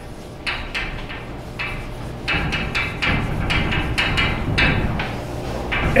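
Chalk writing on a blackboard: a run of over a dozen short, irregular taps and scratches as a word and a formula are written.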